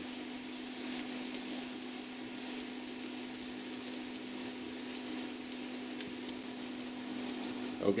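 Diced onion and garlic sizzling steadily in hot cooking oil in a stainless steel pot, sautéing until the onion softens and the garlic turns light brown.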